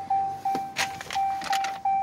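Ram pickup's dashboard warning chime dinging steadily, about three dings a second, with the driver's door standing open. A short click sounds a little under a second in.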